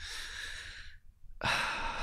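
A man's audible breaths, close to the microphone: two breaths of about a second each, with a short pause between them.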